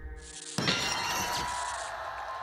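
A shattering sound effect: one sudden crash about half a second in, followed by a ringing, tinkling tail that fades over about a second.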